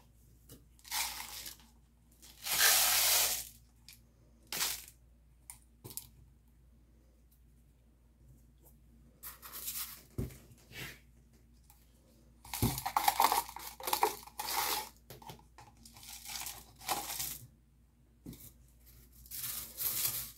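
Crushed glass wet with alcohol ink, poured from one small plastic cup into another and stirred with a wooden stir stick. The gritty scraping comes in several bursts with quiet pauses between them, as the glass is moved back and forth to coat it evenly with the ink.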